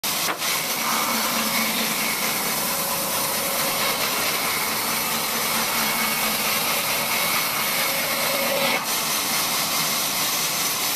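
Large sawmill band saw running and cutting lengthwise through a thick wooden slab as it is pushed along the table: a steady, dense noise with a faint whine. It drops briefly twice, just after the start and about nine seconds in.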